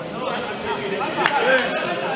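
Voices and chatter echoing in a large sports hall, with a single sharp smack just past a second in: a boxing glove landing.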